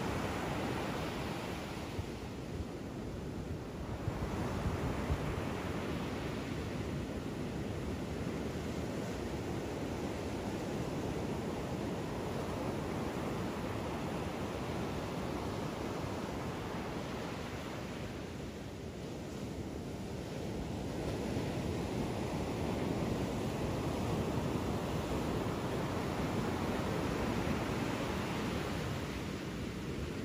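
Ocean surf: a steady rush of waves breaking and washing in, swelling and easing, with quieter lulls a couple of seconds in and again about two-thirds of the way through.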